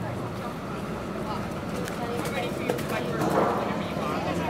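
Indistinct voices talking over steady outdoor background noise, with a few faint clicks in the middle.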